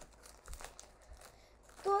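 Plastic snack bag of Goldfish crackers crinkling in a few brief rustles as a hand reaches in for crackers, the strongest about half a second in.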